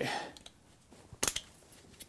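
A couple of sharp metallic clicks about a second in as the retaining clip on a rocker arm of an early Mercedes 4.5 litre overhead-cam V8 is taken off, with a faint tick near the end.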